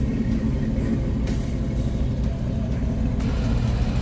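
Hot-rodded Ford Model A-style coupe's engine running with a steady, low exhaust rumble as the car drives off.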